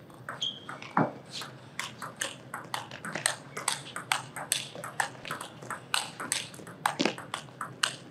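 Table tennis rally: a celluloid-type ball clicking off rubber-faced bats and the table top in a quick, even run of sharp ticks, with a couple of harder hits standing out.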